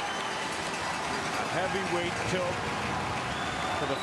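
Hockey arena crowd cheering and applauding in a steady din, with scattered voices shouting through it.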